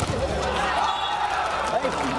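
A volleyball spike hits the block at the net with a single sharp smack right at the start, followed by a steady din of spectators' voices.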